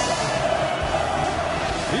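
Large football stadium crowd singing and chanting together, a dense, steady sound of many voices.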